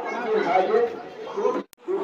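Voices of a gathering of people talking over one another, cut off abruptly near the end and then resuming.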